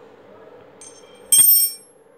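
A steel L-shaped socket wrench clinking on a tiled floor: a faint tap, then about half a second later a louder metallic clink that rings briefly at a high pitch.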